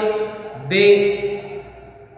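A man's voice intoning a line of Urdu ghazal verse as a slow, drawn-out chant. One held syllable trails off at the start, and a new long syllable begins under a second in and fades away.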